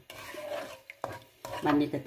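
Wooden spatula stirring and scraping through coconut milk in a nonstick pan for about a second, followed by a woman's voice near the end.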